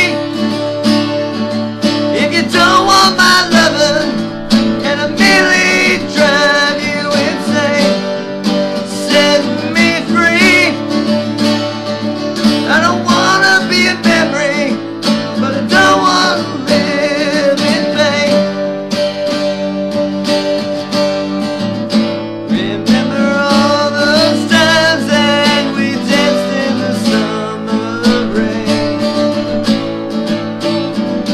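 Two acoustic guitars playing a song, with steady strummed chords under a wavering melodic line that comes and goes.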